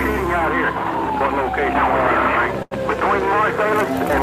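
A siren wailing, its pitch sliding slowly down and then starting back up, over many overlapping voices. The sound cuts out completely for a split second a little before three seconds in.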